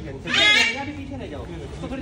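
A young calf bawling once, a short high-pitched call about half a second in, with voices talking in the background.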